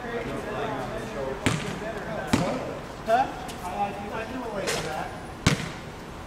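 A basketball bouncing on a hard court: a few sharp thuds spread over the seconds, with men's voices talking in the background.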